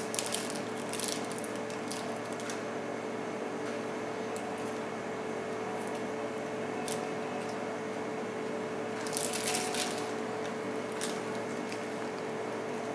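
Chocolate-bar wrapper crinkling in short bursts as it is handled, loudest about nine to ten seconds in, over a steady room hum.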